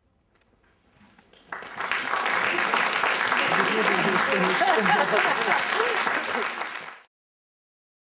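Audience applause breaks out about a second and a half in, with voices calling out from the crowd, and cuts off abruptly near the end.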